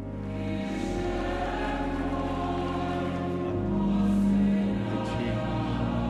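A choir singing slowly in long held notes, swelling to its loudest about four seconds in.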